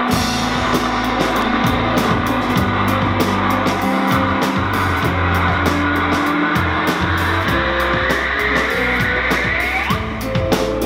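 A live band playing an instrumental intro on mandolin, banjo and drum kit, with held bass notes and quick cymbal strokes. Over the last two or three seconds a note glides steeply upward in pitch, building toward the full band coming in.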